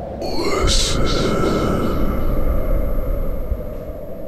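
A horror sound effect: a high wail that rises in pitch over the first second, then holds steady for about three seconds over a low rumble.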